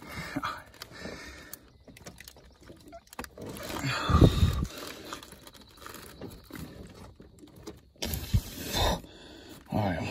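A man grunting and straining with effort while tugging at a stuck connector under a car's dashboard, amid rustling and scraping from his hands. The loudest grunts come about four seconds in and again near nine seconds.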